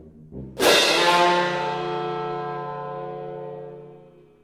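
A chamber ensemble of winds, brass, strings, piano and percussion strikes one sudden, loud chord about half a second in. The chord rings and slowly dies away over the following three seconds, with low notes held beneath it.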